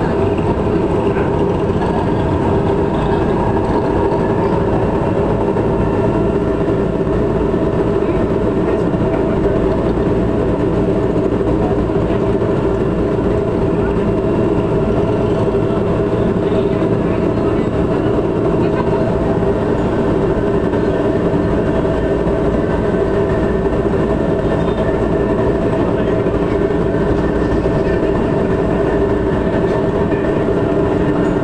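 MRT Line 3 train running along the track, heard from inside the carriage: a steady running noise with a few constant tones held throughout.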